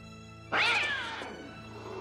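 A cat gives one loud, angry yowl about half a second in, starting suddenly and falling in pitch as it fades, over sustained orchestral film score.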